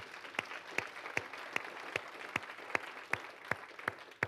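A congregation clapping in praise, with one man's claps close by standing out sharp and even, about two and a half a second.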